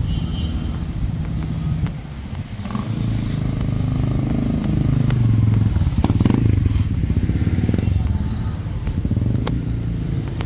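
A motorcycle engine runs close by. It grows louder a few seconds in and is loudest through the middle, over general street noise.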